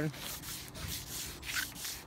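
Wet sanding by hand: 600-grit wet-or-dry sandpaper rubbing back and forth in repeated short strokes over the wet clear coat of a painted plastic bumper cover. This is the flattening stage that knocks down small rock chips before repainting.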